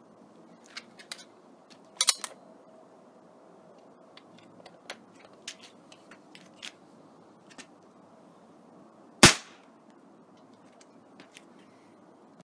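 A Crosman American Classic multi-pump pneumatic air pistol fires a single .177 pellet about nine seconds in, one sharp crack. A few fainter clicks come about two seconds in.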